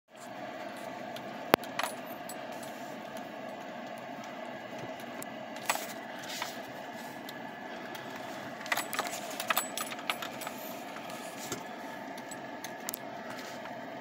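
Steady hum of a slow-moving vehicle heard from inside its cab, with several sharp metallic clinks, some on their own and a cluster in the middle.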